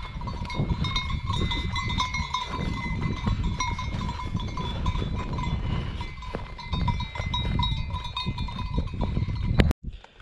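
Many bells worn by a herd of grazing livestock ringing together in a continuous jingle, over an uneven low rumble.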